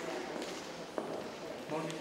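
Indistinct talk among people in a gallery, with a couple of short sharp clicks. A voice says "thank you" at the very end.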